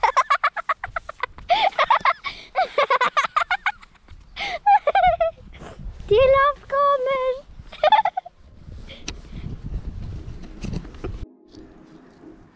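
Animal calls: rapid rattling calls through the first few seconds, then wavering, drawn-out calls at about four and a half, six and eight seconds in, followed by a low rumbling noise.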